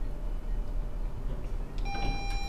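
Steady low hum, then near the end a single electronic arrival chime from the lift's hall signal as its down-direction arrow lights, announcing the car's arrival at the floor.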